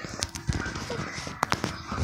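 Handling noise from a camera being moved and set in place: rubbing and several soft knocks, the sharpest a pair of clicks about one and a half seconds in.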